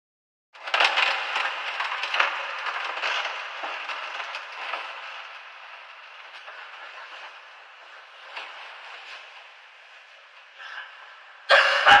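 Crackling noise full of small clicks, thin and muffled like an old recording, starting abruptly and fading slowly over about ten seconds. Near the end a man's voice cuts in loudly with a laugh.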